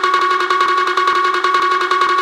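Electronic dance music breakdown from a club DJ mix: a sustained synth note with a fast, even roll of short pulses running over it, and no kick drum or bass.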